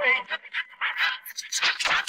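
Isolated vocal stem between sung lines: short, broken breath sounds and clipped vocal fragments with no clear words, quieter than the singing around them.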